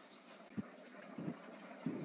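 Faint background noise through a video-call microphone, with a few soft low bumps, a short hiss just after the start and a couple of faint clicks.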